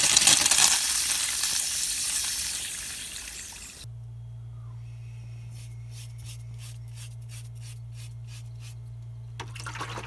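Rinse water from a motorhome waste-disposal point's flush gushing into the cassette-toilet drain, fading out about three seconds in. After a sudden cut, a quieter steady low hum with a quick run of short scratching strokes.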